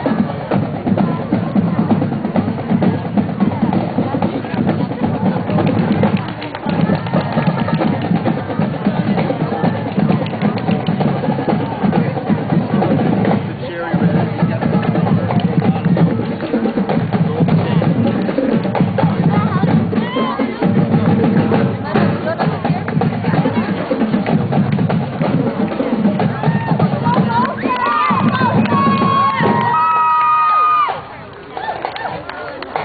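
High-school marching band's drumline playing a marching cadence on snare and bass drums, steady and loud.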